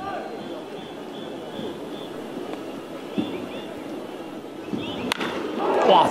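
Ballpark crowd noise with a single sharp crack of the bat about five seconds in, as the ball is hit solidly into the air. The crowd noise swells right after it.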